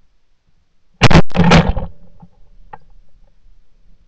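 Two loud shots from a 28-gauge shotgun about half a second apart, about a second in, each dying away quickly; the shots knock down a flying duck.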